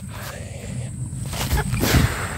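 Rumbling wind and handling noise on a handheld camera's microphone moving through undergrowth, with two louder rustles near the end.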